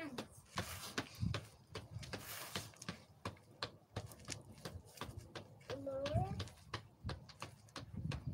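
Irregular soft taps of a football being kept up off a man's foot and knee in keepy-uppy. About six seconds in, a toddler gives a brief high vocal sound.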